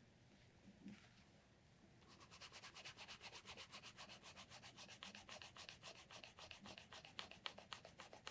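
Faint cloth rubbed briskly back and forth over leather, buffing it by hand. The rapid, even scrubbing strokes, about six a second, start about two seconds in.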